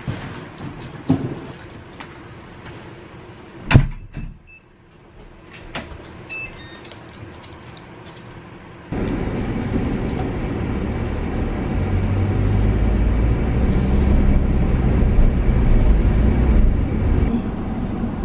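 Cardboard boxes and bags rustling and knocking as recycling is carried out through a front door, with a loud thud about four seconds in and a few short electronic beeps after it. About halfway through it cuts to the steady road and engine noise of a car being driven, heard from inside the cabin and growing a little louder.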